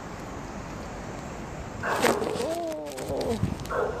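A dog gives one call about halfway through, starting sharply like a bark and drawing out into a long, wavering cry that falls in pitch.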